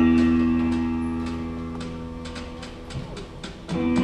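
Show music over the theatre speakers: an intro chord rings on and slowly fades away, with light ticking about three times a second over it. Near the end, louder music comes in again.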